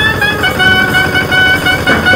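Music: a wind instrument playing a melody in held notes that step from pitch to pitch.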